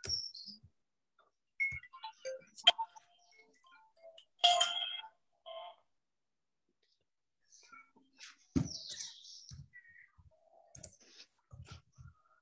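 Scattered quiet keyboard and mouse clicks from typing on a computer. About four and a half seconds in comes a short electronic tone, with a shorter one a second later.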